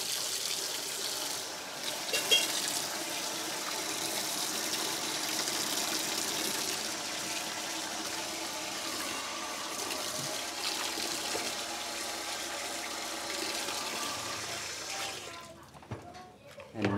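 Tap water pouring steadily into a stainless steel sink and splashing over hands and the charred roasted plantains being rinsed, stopping shortly before the end.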